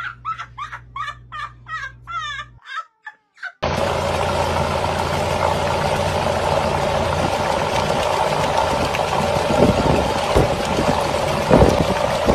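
Laughter for the first couple of seconds, then after a brief silence a car engine running steadily, its top end exposed with the valve cover removed, with a few sharp clicks near the end.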